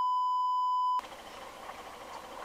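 A steady, high-pitched censor bleep that blots out all other sound and cuts off suddenly about a second in. After it, faint hiss of road noise.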